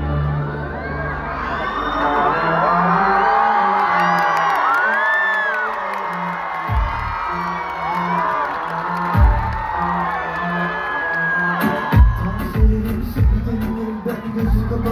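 Concert crowd screaming and cheering over a stage-entrance music intro of sustained deep synth tones, with two deep booming hits. About twelve seconds in, a steady drum beat kicks in as the song starts.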